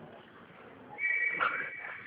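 A single steady, high whistle tone starting about halfway in and holding for about a second.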